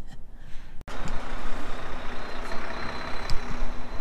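About a second in, quiet car-cabin sound cuts abruptly to steady outdoor noise: a low rumble and hiss with a faint steady hum running under it.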